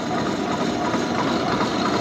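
Large Gorton milling machine running steadily under power feed, its shell mill taking a light facing cut across a welded adapter plate.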